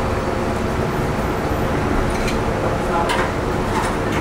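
Steady workshop noise: a continuous low roar with a faint hum, and a few light clicks in the second half.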